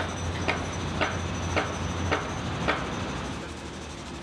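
New York City ambience: a steady low traffic rumble with a regular series of five sharp knocks, about two a second, that stop a little under three seconds in.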